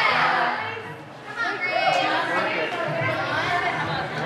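Girls' voices calling out and chattering in a gym hall, loudest in a shout right at the start.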